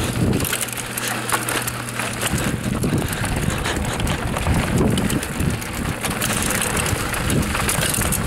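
Raleigh Tekoa 29er hardtail mountain bike descending a rough dirt singletrack: tyres on dirt and the unsuspended frame and drivetrain clattering and rattling over the bumps, with rush of air on the microphone.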